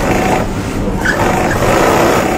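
Strobel stitching machine running steadily as it sews a fabric sock lining to the edge of a shoe upper.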